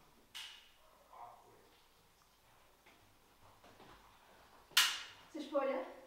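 Quiet room with a faint click under half a second in, then a single sharp bang almost five seconds in, followed at once by a short burst of voice.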